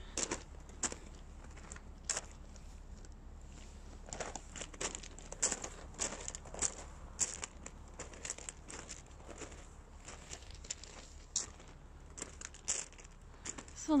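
Footsteps on gravel: a scatter of small, irregular clicks and crackles over a faint background hiss.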